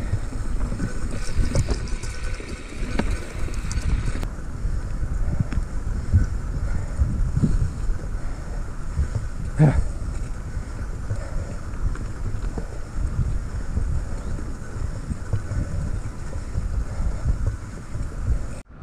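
Wind buffeting the microphone while a mountain bike rolls over a rough dirt singletrack, with the tyres and bike frame rattling over bumps and roots, and one sharper jolt about ten seconds in.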